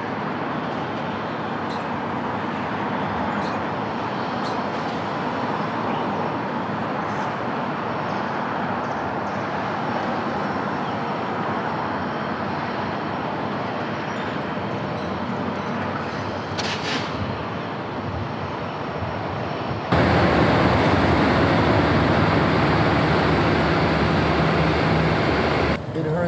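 Steady outdoor background noise like distant road traffic. About twenty seconds in it cuts suddenly to a louder, steady noise with a low hum in it.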